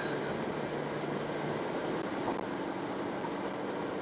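Steady road and engine noise inside a car cruising at motorway speed, an even rushing sound with a low hum under it.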